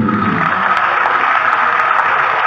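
A steady rushing noise with no voice in it, starting suddenly as the chanting breaks off.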